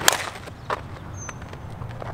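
A single sharp crack of a 2023 Miken Freak 23KP Maxload two-piece composite slowpitch bat striking a 52/300 softball squarely, then a fainter click under a second later.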